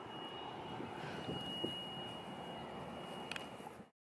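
Faint, steady outdoor background noise by open water, with a thin, steady high tone through the first half and a small click near the end; the sound cuts off abruptly just before the end.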